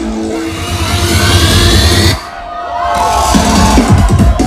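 Psytrance music in a breakdown: with the kick drum gone, a bass pulse runs under rising sweeps for about two seconds, then drops away briefly. Gliding synth tones follow, and the kick drum comes back in at the very end.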